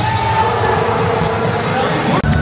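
Live sound of an indoor basketball game: the ball in play during a shot at the basket, with players' and crowd voices, one voice held for over a second.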